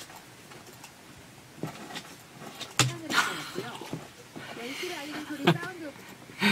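Low studio room tone for about a second and a half, then a couple of sharp clicks and a man and a woman laughing quietly.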